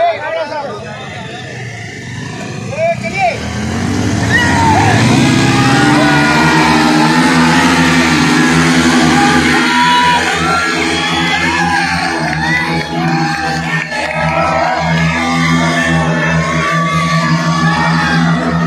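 Two 200 cc motorcycle engines rev up a few seconds in and are then held at high revs, rear wheels spinning in the dirt as the bikes strain against ropes held by a man. A crowd shouts and cheers throughout.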